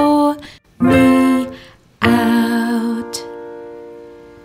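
The end of a children's nursery-rhyme song: a woman sings the last two short notes over light instrumental accompaniment, then a final chord starts about two seconds in and slowly fades away.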